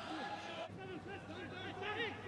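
Faint shouts and calls from several players on a football pitch, carrying across an empty stadium with no crowd noise.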